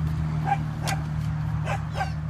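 A small dachshund barking: three short, high yapping barks spread over the two seconds, over a steady low hum.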